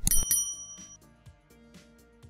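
A short bell-like ding sound effect at the very start, its high ringing tones fading within about a second, over background music with a regular beat.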